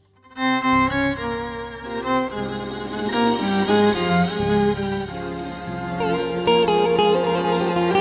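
A live Turkish folk band starts a türkü's instrumental introduction about half a second in: a melodic lead over bass and chords. In the second half, accented hits come about once a second.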